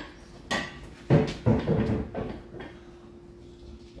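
Metal clanks and clinks of tools or parts being handled in a car's engine bay: a few sharp knocks in the first couple of seconds, the loudest about half a second and a second in, over a faint steady hum.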